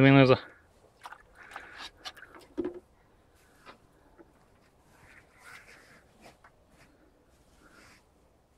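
Faint knocks and sloshing as a small plastic tub is handled in a bucket of water, mostly in the first three seconds, followed by sparse faint clicks.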